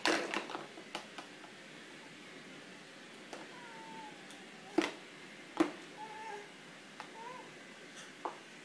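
A hard plastic bowl knocking and clattering against a plastic high-chair tray: a cluster of clicks at the start, then scattered knocks, the two loudest a little before and a little after five seconds in. Between the knocks come a few short, faint, squeaky vocal sounds from the baby.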